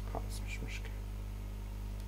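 A person whispering a few brief, faint syllables in the first second, over a steady low electrical hum.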